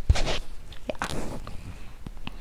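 Handling noise on a clip-on microphone: a low bump at the start, short rustles and a few soft clicks as hair and clothing move against it while her hair is pulled back.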